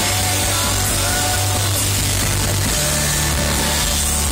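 Rock band playing live, with electric guitar, bass guitar, keyboard and drum kit, loud and steady. The bass line moves to a new note about two-thirds of the way through.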